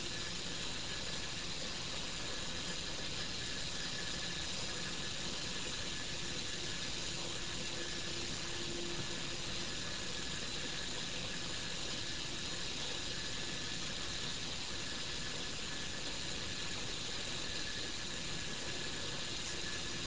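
Motor-driven probe carriage running steadily: a faint, even mechanical hum with hiss as it draws the magnetometer probe along the coil axis.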